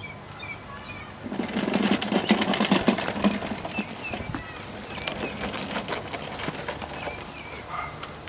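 Wheels of an unpowered push lawn mower rattling and crunching over asphalt strewn with dry seeds, loudest for about two seconds starting a second in, then quieter as it rolls onto grass. Small birds chirp throughout.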